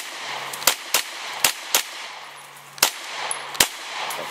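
Beretta CX4 Storm semi-automatic 9mm carbine firing about seven shots at an uneven pace, some in quick pairs and others a second or so apart.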